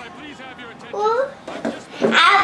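A young child's brief vocal sound that rises in pitch about halfway through, with a shorter one near the end. The rest is fairly quiet.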